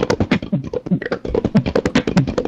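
Beatboxing: a fast run of percussive mouth sounds, about ten strokes a second, over a low hummed bass line.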